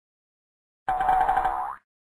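Cartoon sound effect for an animated logo: one pitched, wobbling tone just under a second long, starting about a second in.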